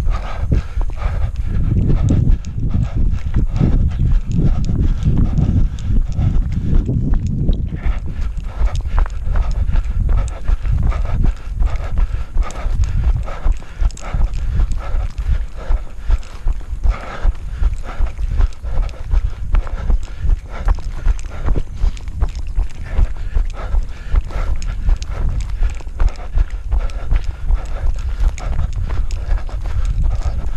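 Running footsteps on a grassy dirt trail, a steady quick rhythm of nearly three footfalls a second, picked up by a body-worn camera. A louder low rumble runs under the steps during the first eight seconds or so.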